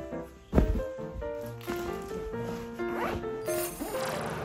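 Canvas backpack being packed: a zipper pulled in quick strokes and a thump about half a second in, over background music with a light melody.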